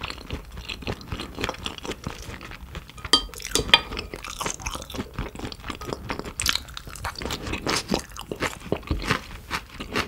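Close-miked chewing of sticky raw beef, a dense run of short, wet mouth smacks. Two sharper, louder clicks come about three seconds in.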